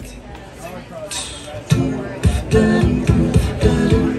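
A live pop song sung by a vocal group through microphones and speakers. A loud, regular beat comes in just under two seconds in, after a quieter start.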